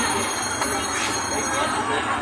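Busy street noise: a steady wash of traffic with people's voices mixed in.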